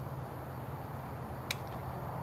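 Outdoor night ambience: a steady low hum with a faint even hiss, broken by a single sharp click about one and a half seconds in.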